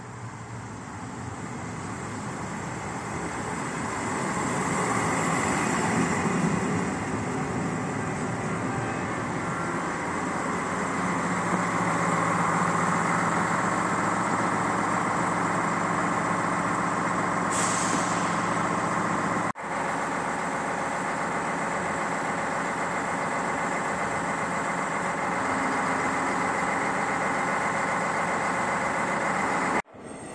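SNCF X73500 diesel railcar arriving at the platform, its diesel engine growing louder over the first few seconds as it draws in, then running steadily as it stands. A short hiss of air breaks in a little past halfway.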